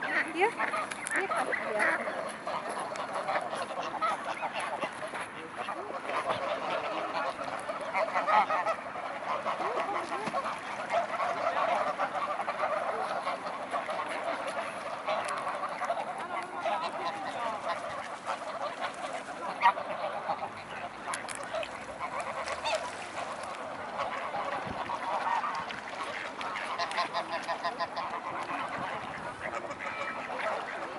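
A flock of greylag geese honking continuously, many calls overlapping at once.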